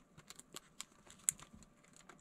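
Faint, irregular light clicks and taps of a clear plastic phone case being handled and turned over in the hands, the clearest click about a second and a half in.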